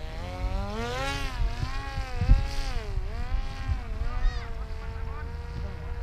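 Electric motor and propeller of a Flite Test Arrow RC flying wing in flight after a hand launch, a buzzing whine whose pitch rises and falls repeatedly, then holds steady near the end. Wind rumbles on the microphone underneath, with a gusty thump a little past two seconds in.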